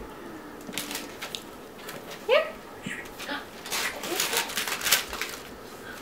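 Wrapping paper crinkling and tearing in short irregular crackles as a gift box is unwrapped, busiest in the second half. About two seconds in there is a baby's short, high, rising vocal sound.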